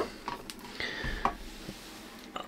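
A few faint, sharp clicks over quiet room noise.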